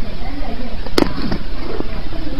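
A single sharp click about halfway through, followed by a couple of fainter ticks, over a steady low background hum.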